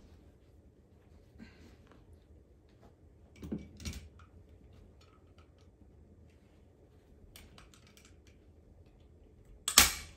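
Quiet handling of upholstery fabric over a chair-seat board, with scattered small clicks and rustles, then one loud sharp snap of a hand staple gun firing a staple near the end.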